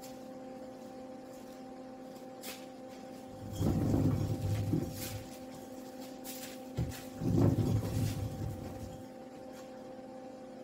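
A wooden hearse prop rolling on metal casters over a concrete floor, in two rumbling runs of a second or so each, over a steady hum.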